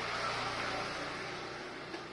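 Background noise without speech: a broad, even hiss that swells slightly just after the start and then slowly fades.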